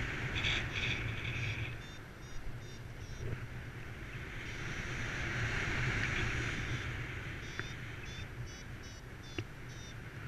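Wind rushing over the camera microphone of a paraglider in flight, a steady low rumble with a hiss that swells and fades. Two runs of faint short high-pitched chirps sound over it, near the start and again in the second half.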